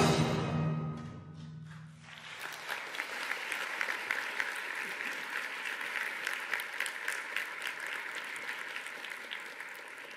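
The concert band's final chord dies away in the hall's reverberation. About two seconds in, audience applause starts and carries on steadily.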